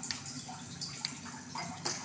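Fenugreek seeds sizzling in hot oil in a small pan: a soft, steady fizz with a few faint pops.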